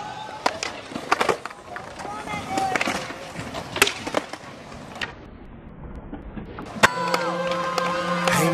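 Skateboard wheels rolling, with the board clacking and slapping down in a run of sharp hits, the loudest about four seconds in and again just before the end. Music comes in about a second before the end.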